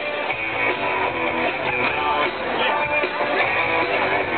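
A live band playing through a PA, with guitar strumming to the fore.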